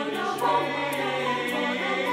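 Mixed choir of men's and women's voices singing sustained chords in harmony. An egg shaker keeps a steady beat of about four shakes a second over the voices.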